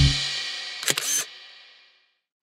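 A children's song's last chord dying away, then a camera-shutter sound effect: a quick double click about a second in, followed by silence.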